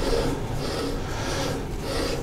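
Skew chisel shaving dry oak while the spindle is turned slowly by hand on a stationary lathe: a rasping scrape in strokes about twice a second.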